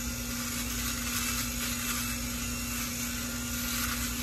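Bell + Howell Tac Shaver, a small battery electric shaver, running over dry stubble on the cheek: a steady rasping buzz.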